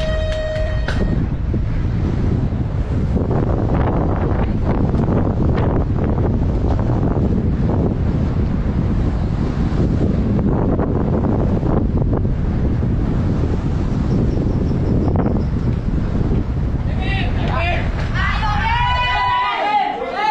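Wind buffeting the microphone with a loud, steady rumble as a downhill bicycle speeds down a village path. A steady start beep ends about a second in, and near the end people shout and cheer.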